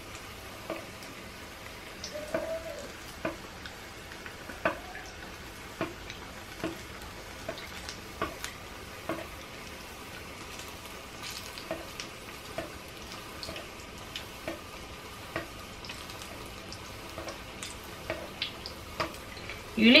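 A saltfish fritter frying in shallow oil in a frying pan: a steady sizzle with frequent small pops and crackles, and a metal utensil now and then clicking and scraping in the pan. The oil is hot enough to brown the batter quickly, which the cook suspects means it may be too hot.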